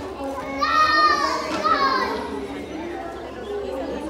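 A child's loud, high-pitched squeal lasting about a second and a half, starting just over half a second in, over the steady chatter of a crowd of children and adults in a hall.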